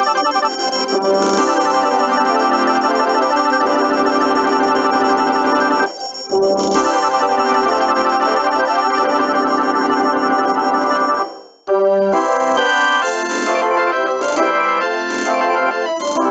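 Sibelius notation software's playback of an orchestral fanfare: synthetic instrument sounds holding long chords, with a brief dip about six seconds in and a short break near twelve seconds, then shorter, more separate notes. It sounds very synth, mechanical and artificial, hardly human.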